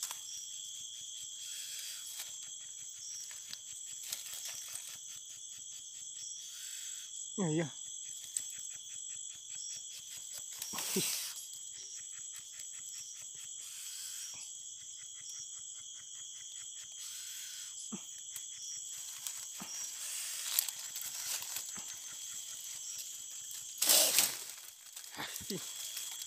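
Steady night chorus of insects: a continuous high-pitched drone at two pitches with a fast pulsing beneath it, and a few short spoken words.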